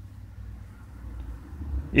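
A low, steady background rumble through a pause in a man's talk. His voice starts again right at the end.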